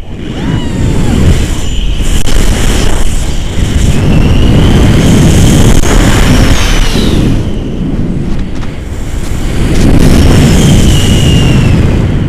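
Wind buffeting an action camera's microphone in paragliding flight: a loud, rumbling roar that swells and eases. Thin high whistling tones rise and fall over it twice, around the middle and near the end.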